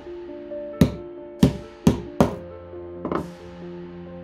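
A hammer striking the metal turrets of an amplifier turret board: four sharp taps about half a second apart, then a short rattle of lighter knocks near the end, over background music.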